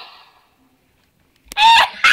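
The tail of a pop song fades out, leaving about a second of near silence. Then, after a click, comes a loud, very high-pitched shriek from a girl's voice, with a second one starting at the very end.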